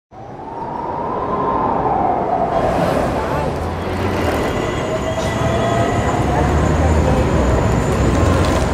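Busy city street noise with a train rumbling, under a long squealing tone that slowly falls in pitch over several seconds. The noise fades in quickly at the start.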